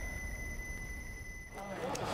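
A low rumbling sound-effect drone with a thin, steady high-pitched tone over it. It cuts off abruptly about one and a half seconds in, and different, fainter background sound takes over.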